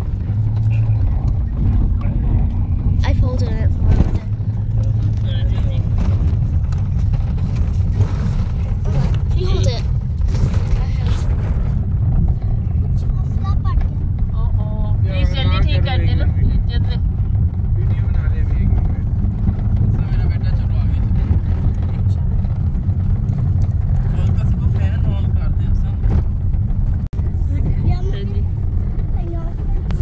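Vehicle driving along a rough dirt road, heard from inside: a steady low rumble of engine and road noise, with people's voices now and then.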